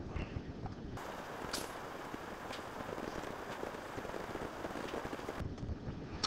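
Low, steady hiss of background noise from the recording, with a few faint clicks.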